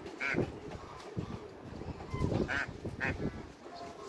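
Penned ducks and barnacle geese calling: three short, high-pitched calls, the first just after the start and two more close together near the three-second mark.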